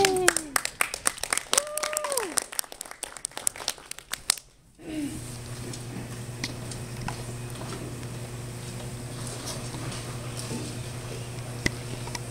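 Audience applause with a couple of whoops, stopping abruptly after about four and a half seconds. A steady low hum follows in the hall.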